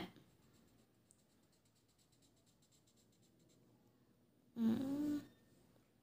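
Very faint scratching of a marker pen on paper, close to silence. About four and a half seconds in, a short vocal sound lasting under a second.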